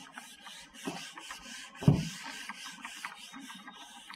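A handheld eraser rubbing across a whiteboard in quick back-and-forth strokes, with one louder thump about two seconds in.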